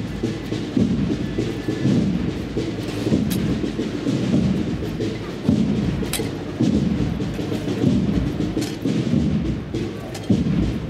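Deep procession drums beating a slow, heavy pulse of about one beat a second, with a few sharp clicks on top.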